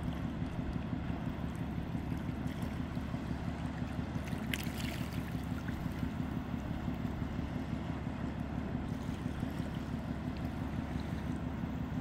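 A steady low engine-like drone with a hiss over it, and a brief click about four and a half seconds in.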